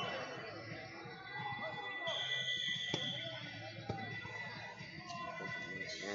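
Background music and scattered voices echoing in a large hall, with a single steady high tone lasting about a second, about two seconds in.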